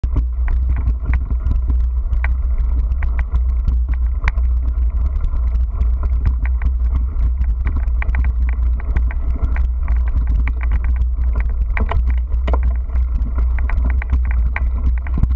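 A vehicle riding over a rough grassy dirt track: a steady low rumble with frequent short rattles and knocks as it jolts over the bumps.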